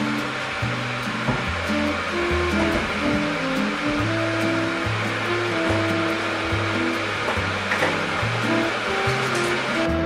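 Background music with a slow, steady bass line, over a steady rushing hiss from an electric kettle heating water.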